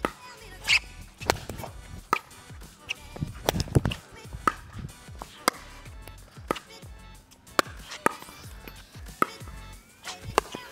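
Pickleball rally: sharp pops of paddles striking the hard plastic ball, with the ball bouncing on the court, about one hit every second. One of the paddles is a raw-carbon-fibre-faced, edgeless Diadem Warrior v2.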